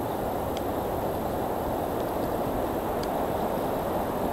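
Steady rushing of water pouring down a dam spillway into the river below, with a few faint clicks.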